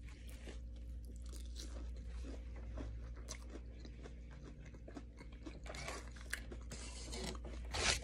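A person chewing a mouthful of mozzarella ball close to the microphone: small irregular crunches and mouth clicks over a low steady hum.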